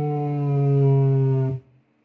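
A steady electronic tone with many overtones played through an amplifier and loudspeaker, its pitch sagging slightly, cutting off suddenly about one and a half seconds in.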